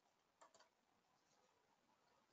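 Near silence: room tone, with a quick faint double click of a computer mouse about half a second in.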